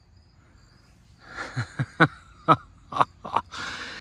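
A man's short breathy chuckles, about seven quick pulses starting a little over a second in, followed by an intake of breath.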